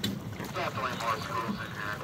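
Water splashing at the side of a boat as a hooked fish is scooped into a landing net, under wind on the microphone and faint voices, with a short click at the start.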